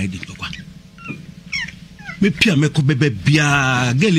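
A person's voice: quieter at first, then speaking from about two seconds in and holding one long drawn-out tone near the end.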